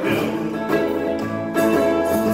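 Electric guitar playing a blues fill of picked notes between sung lines, with new notes struck near the start, about two-thirds of a second in and again at about a second and a half.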